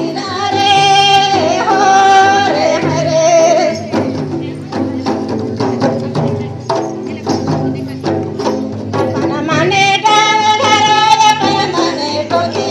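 Mundari folk dance music: a hand-beaten barrel drum keeps a steady, busy beat under singing. The voices drop out for several seconds in the middle, leaving the drum, then come back near the end.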